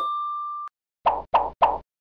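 Pop-up sound effects on an end card. A held ding tone cuts off suddenly, then three quick plops come about a third of a second apart as three social-media links pop onto the screen.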